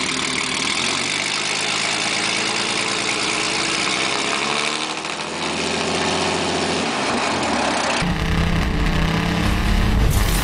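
Hudson Hornet's straight-six engine idling. About eight seconds in, the sound cuts abruptly to a different, deeper rumble.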